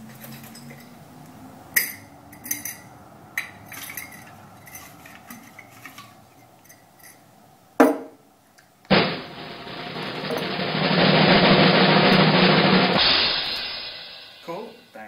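Scattered clicks and rustles of a glass jar of paper slips being handled, with a sharp click near eight seconds. From about nine seconds a snare drum roll swells louder and then stops about a second before the end.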